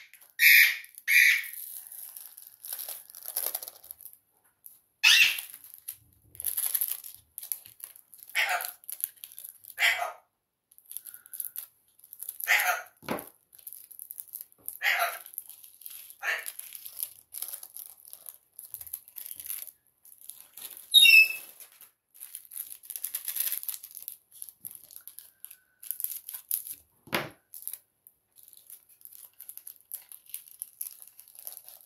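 Small plastic bags of diamond-painting drills crinkling and rustling in short, irregular bursts as fingers handle and open them.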